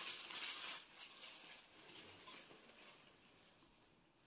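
Tissue paper crinkling and rustling as it is pulled away from a wrapped item, loudest in the first second and dying away over the next two.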